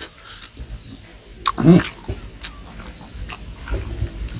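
Close-up eating sounds: wet chewing and lip-smacking on a mouthful of rice and smoked pork, scattered short clicks, with one louder short grunt about one and a half seconds in.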